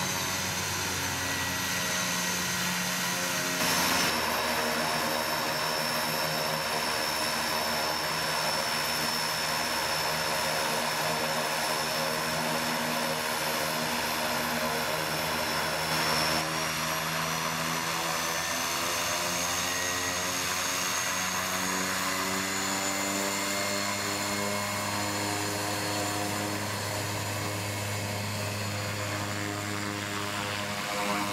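Pilatus PC-6 Porter's engine and propeller running at low taxi power on the ground: a steady drone with a high whine above it, the pitch drifting slightly as the plane taxis. It jumps abruptly about 4 and 16 seconds in, where the recording is cut.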